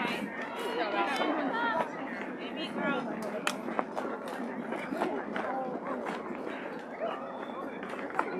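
Chatter of many voices at once, girls and adults talking over each other across an open ball field, with no single voice standing out and a few sharp clicks mixed in.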